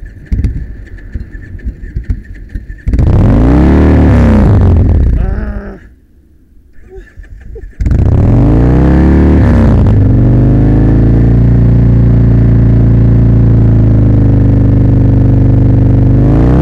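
V-twin cruiser motorcycle engine cranking on the electric starter. It catches about three seconds in and is revved, then dies. It is cranked again and catches near the eighth second, revs, and settles into a steady idle. The engine is being restarted on fresh petrol after diesel mistakenly put in its tank was drained out.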